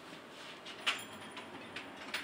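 Quiet room noise with one short click a little under a second in.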